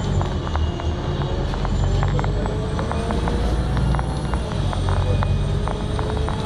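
Cabin noise inside a moving bus: a steady low engine drone with many small rattles and clicks, and a faint whine that slowly rises in pitch.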